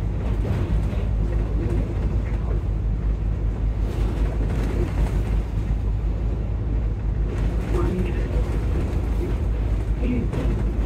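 Volvo B9TL double-decker bus driving along a wet road, heard from the upper deck: a steady low diesel engine rumble under road and tyre noise.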